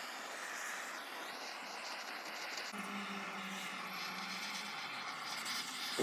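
Handheld gas blowtorch running with a steady hiss as its flame scorches the surface of the wooden shelf to darken the grain.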